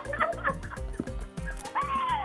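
A woman laughing in short, high-pitched squeals, then a long drawn-out laughing cry near the end, over background music with a steady beat.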